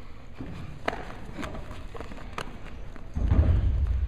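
Grapplers moving on a wrestling mat: three sharp slaps or knocks about half a second to a second apart, then a loud low thudding rumble that starts suddenly near the end.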